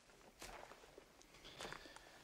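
Near silence with a few faint, soft footsteps.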